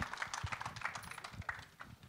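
Scattered clapping from an audience, thinning out and dying away near the end.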